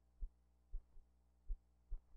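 Soundtrack noise from old news film with no recorded sound: faint low thumps, about four in two seconds, over a steady low hum.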